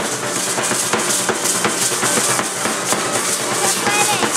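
Live drum-and-rattle dance music: a drum beat driving a steady shaking of many dancers' hand rattles, with stamping zapateado footwork.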